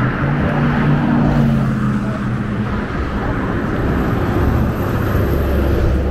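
Passing road traffic: a steady engine drone, its low hum strongest in the first few seconds and giving way to a deeper rumble near the end.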